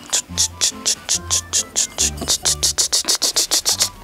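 A glaze brush stroking quickly against the inside of a ceramic cup: short scratchy strokes, about six a second, quickening to about eight a second in the second half. Quiet background music plays underneath.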